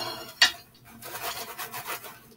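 Oil-coated oyster crackers rustling and clattering as they are poured out of a plastic zip bag onto a plate, with the bag crinkling, and one sharp knock about half a second in.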